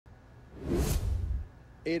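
A broadcast whoosh sound effect with a low rumble under it, swelling and fading over less than a second, which goes with a TV news graphic wipe transition.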